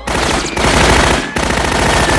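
Thompson submachine gun (Tommy gun) firing long bursts of rapid automatic fire, broken by two brief pauses about half a second and just over a second in.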